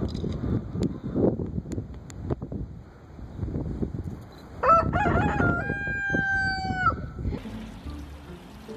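A rooster crows once, about halfway through: a few short rising notes and then one long held note that drops at the end, lasting about two and a half seconds, over a low background rumble.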